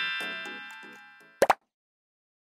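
Editing sound effects: a chime-like jingle with many ringing notes dying away, then a short pop about a second and a half in.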